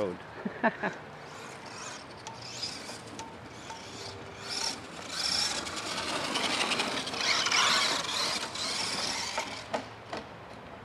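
Traxxas 1/16 Summit VXL electric RC truck driving across grass: a rough, raspy running noise from its motor, drivetrain and tyres that grows loud from about five seconds in as it runs close by, then drops away near the end.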